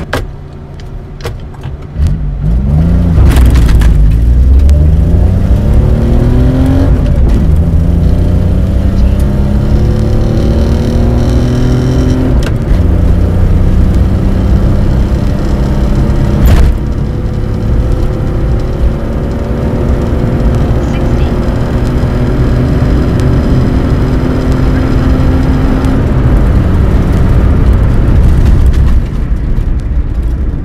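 A 1992 Geo Metro XFi's 1.0-litre three-cylinder engine on a full-throttle acceleration run from a standstill, heard from inside the cabin. The revs climb in each gear with three upshifts, the last gear pulling slowly for a long stretch before the sound eases near the end.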